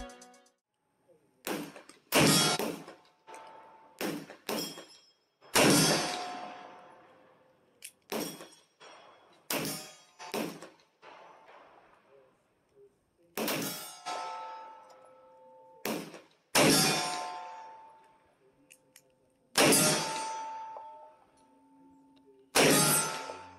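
Shots from a 9mm pistol fitted in a CAA MCK micro conversion kit, fired singly and in quick doubles and triples, about sixteen in all, with steel plate targets ringing after several of the hits.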